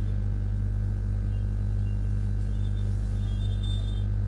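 Steady low hum on the webinar's audio line, with faint short high tones coming and going, most in the second half.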